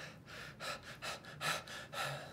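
A man's short, breathy gasps, about five in quick succession, caught up in emotion.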